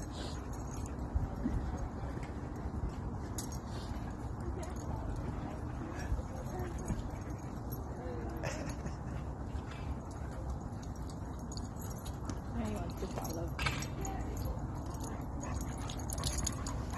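Several dogs at play giving occasional faint yips and whines, with a few short clicks scattered through, over a steady low rumble.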